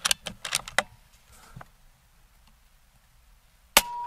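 Air Venturi Avenger Bullpup .22 PCP air rifle being reloaded and fired: a quick run of metallic clicks as the side lever is worked to chamber the next pellet, then near the end one sharp shot report with a brief ringing tone after it.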